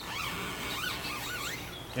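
Several short, high squeaks that rise and fall in pitch, from the rubberized, tape-like film on a car's stainless window trim being scraped and peeled off with a utility knife.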